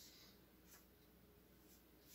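Near silence: room tone, with a faint rustle of paper as a sheet is handled, about a second in.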